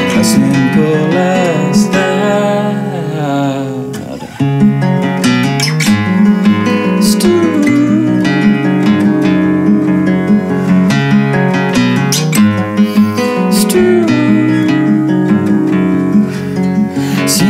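Solo acoustic guitar played fingerstyle in an instrumental passage between sung lines. The notes thin out and fade about four seconds in, then the playing picks up again.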